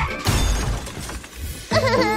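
Cartoon crash sound effect: a sudden smash with a shattering, breaking sound at the start that dies away over about a second and a half, followed by music near the end.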